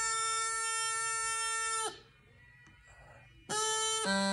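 Bagpipe practice chanter holding one long, steady note that cuts off about two seconds in. After a pause of about a second and a half it starts again on the same note.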